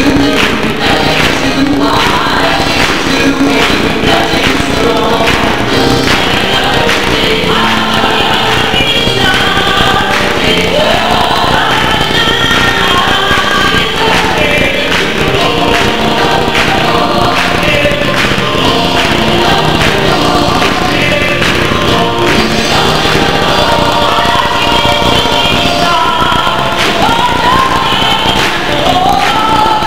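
Church choir singing a gospel song.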